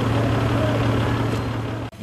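Fire truck engine idling with a steady low hum. It cuts off abruptly just before the end.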